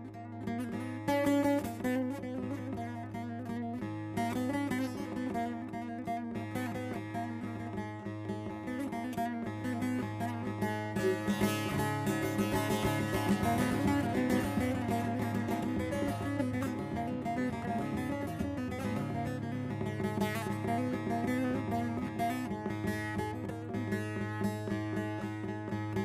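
Bağlama (long-necked Turkish saz) played solo with a plectrum: rapid plucked melody notes over a steady low drone, the instrumental introduction to a türkü.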